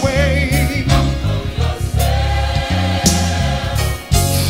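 Gospel choir singing with a backing band: held, wavering voices over a bass line that changes note every half second or so, with drum and cymbal hits.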